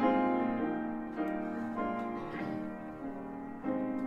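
Piano playing a slow hymn introduction, chords struck every second or so and left to ring and fade.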